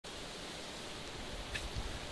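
Steady outdoor background noise with a low rumble, and a few faint soft thumps in the last half second.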